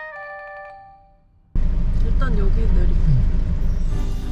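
A short chiming, bell-like melody fades out in the first second. After a brief gap, loud steady road and engine noise inside a moving car cuts in suddenly about a second and a half in, with faint voices under it.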